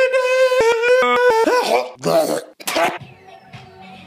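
A man's voice sings a long, high, strained note that breaks into a quick run of shorter steps in pitch. It is followed about two seconds in by a rough, noisy vocal burst like a cough or shout. Near the end it cuts to a much quieter background.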